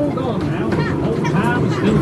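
Voices talking over the steady low rumble of a small ride train running along its track.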